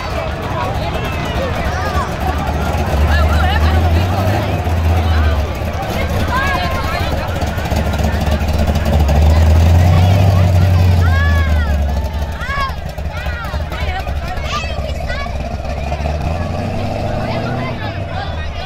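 Deep engine rumble of a Chevrolet Chevelle SS's V8 as it rolls slowly past, swelling twice. Crowd voices and calls are heard over it.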